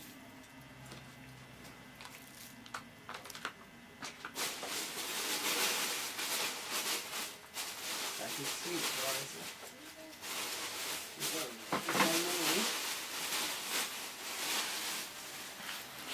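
Bundle of dried leafy herb branches rustling and crackling close to the microphone as it is handled. The uneven rustle starts about four seconds in, after a quiet start with a few light clicks.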